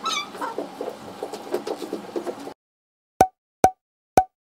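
Two short, identical cartoon-style pop sound effects, about half a second apart, near the end. They follow a couple of seconds of faint room sound with light, irregular knocks, which cuts off to silence.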